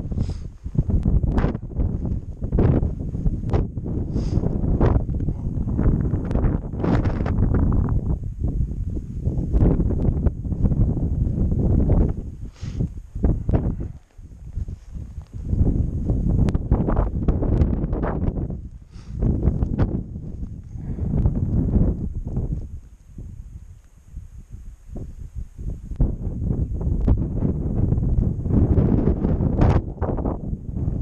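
Wind buffeting the microphone in strong, uneven gusts, with a few light clicks.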